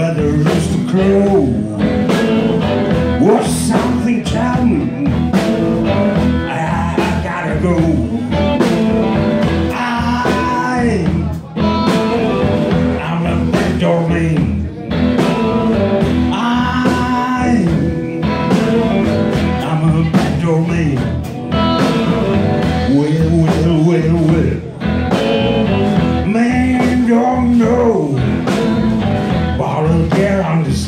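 Live electric blues band playing an instrumental break: electric guitar lines with bent notes over drums and electric bass, in a steady beat.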